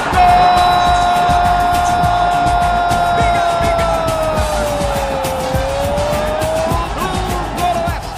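A Brazilian football commentator's drawn-out goal call, one long held note of about six and a half seconds that sags slightly in pitch before breaking off. It plays over background music.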